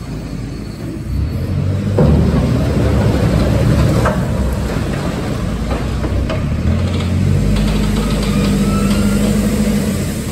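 Diesel engine of a JCB TM310S pivot-steer telehandler running under load, its note rising about two seconds in, with a few sharp knocks from the working loader.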